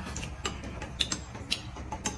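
A metal spoon clicking lightly against a small glass cup as food is spooned out of it, four or five short clicks about every half second, with quiet chewing.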